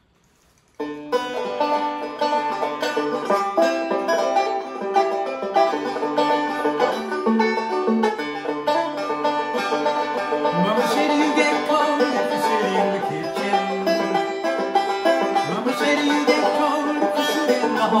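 A banjo played solo: after a moment of near silence it starts about a second in with a steady run of picked notes, and a man's voice starts singing right at the end.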